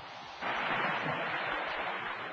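Apollo command module splashing down in the sea: a rushing hiss of water spray that starts about half a second in and eases off near the end.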